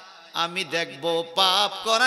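A man's voice preaching in a chanted, sing-song delivery through a microphone, in long held phrases whose pitch rises and falls, the tuneful style of a Bengali waz sermon. It starts after a brief pause at the beginning.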